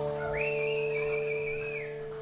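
The band's final chord rings out on electric guitar and fades. Over it comes one long whistle from the audience that slides up, holds a high pitch, and drops off near the end.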